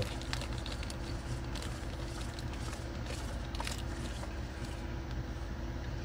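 Steady low hum of an idling car heard from inside the cabin, with faint small clicks and rustling from small items handled in the hands.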